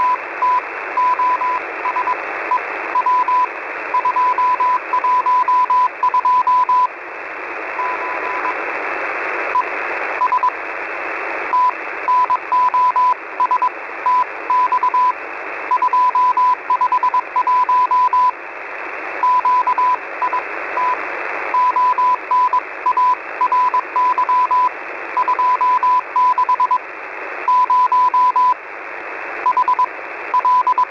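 Morse code (CW) from the Russian military station known as The Squeaky Wheel, received on shortwave at 5361 kHz. A single steady-pitched beep is keyed on and off in dots and dashes over constant receiver static, spelling out coded message words and numbers with a few short pauses between groups.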